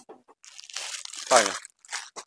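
Crisp, crinkly rustling of a folded saree as it is slid across and laid down on the display, lasting about a second from half a second in.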